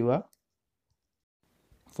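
A man's voiceover in Malayalam breaks off abruptly about a quarter second in, leaving dead silence for over a second, and resumes just before the end.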